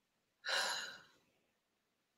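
A single audible breath, about half a second long, taken about half a second in.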